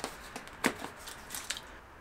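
A Schwalbe Marathon bicycle tire being pushed over the rim edge by hand: faint rubbing and scuffing of rubber on the rim, with a few short sharp snaps as the bead seats. The loudest snap comes a little over half a second in.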